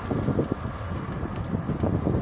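Road noise inside a moving car's cabin at highway speed: a steady low rumble of tyres and engine, with irregular low bumps.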